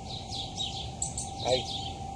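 Small birds chirping repeatedly: many short, high chirps in quick succession.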